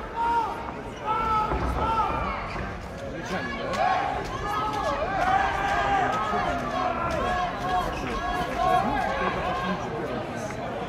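Crowd at a kickboxing fight: several voices talking and calling out over one another, with a few short sharp knocks.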